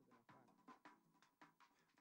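Near silence in a pause of a video's French narration: faint voice-like sound and a thin steady tone.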